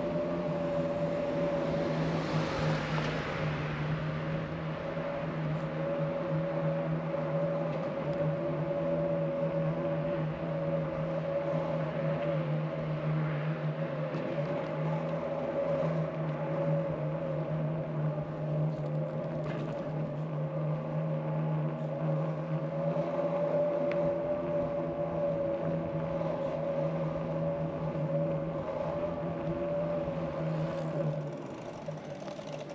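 A steady mechanical hum that holds one pitch, over a rushing wind and road noise, with a louder rush about two seconds in.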